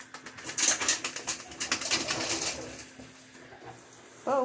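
A wet dog moving about under a running shower: a burst of splashing and spattering water for about two seconds, then quieter.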